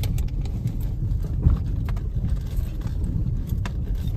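Steady low rumble of a vehicle on the move, with engine and road noise and a few short clicks or rattles.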